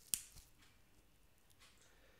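Dried cannabis bud snapped in half by hand: one sharp snap of the stem near the start, with a fainter crack a moment later. A perfect snap straight down the middle, the sign that the bud is perfectly cured.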